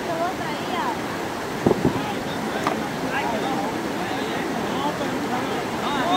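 Steady rush of a shallow river running over rocks, with people's voices calling faintly in the water. Two sharp knocks about two seconds in.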